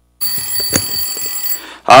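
A bell ringing for about a second and a half before cutting out, typical of the bell that signals a legislative committee meeting is starting. A man's voice then says "好".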